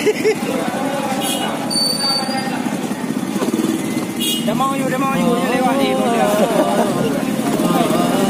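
Small scooter engine running as it is ridden slowly, a steady fast-pulsing drone, with people's voices over it in the second half.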